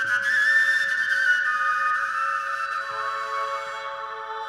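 Slow folk instrumental music with fiddle: long, high, whistle-like held notes over a steady lower drone note, the top note stepping down about three seconds in.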